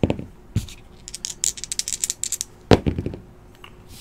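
Dice thrown and tumbling on a table mat: a couple of knocks, a quick run of light clicking, then a sharper knock near the end as they settle.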